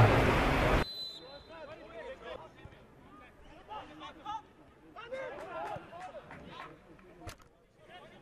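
A man's voice over the stadium loudspeaker stops abruptly about a second in. Then come faint, scattered shouts and calls across the pitch, with a single sharp knock near the end.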